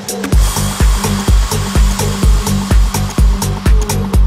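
Techno track in which a held low synth chord gives way, about a third of a second in, to a steady kick drum at about two beats a second, with ticking hi-hats and a hissing noise wash over it.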